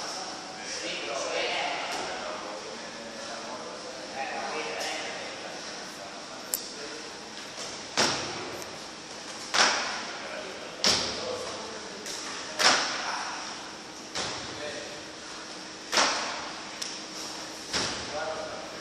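Feet landing on a wooden plyo box during repeated box jumps: a sharp thud with a short ring about every one and a half seconds, starting about six seconds in.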